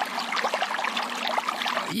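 A wet, irregular sloshing sound, like liquid swishing about, standing in for tea sloshing in a full stomach.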